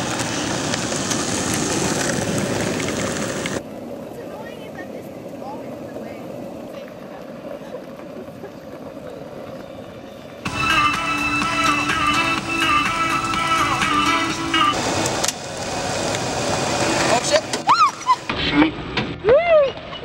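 Skateboard wheels rolling on asphalt, a rough steady noise, heard in cut-together stretches. Background music with held chords comes in about halfway, and high squealing laughter follows near the end.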